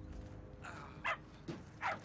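A dog barking: two short, sharp barks that fall in pitch, about a second in and near the end.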